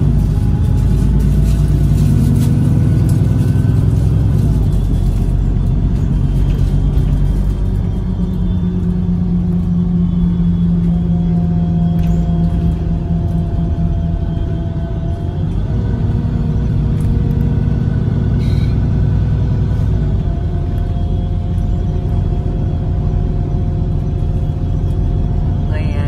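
Inside a moving city bus: the engine's steady drone and road rumble, its pitch shifting a few times as the bus changes speed.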